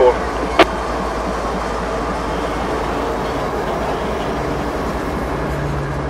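A CSX diesel-electric freight locomotive and the first cars behind it rolling slowly past at a few miles per hour, a steady rumble of engine and wheels on rail. A single sharp click comes about half a second in, and a steady low hum joins near the end.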